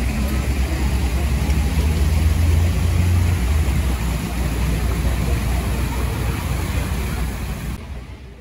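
Steady city street noise: a low traffic rumble mixed with rushing water from a fountain pool spilling over its edge, fading out at the end.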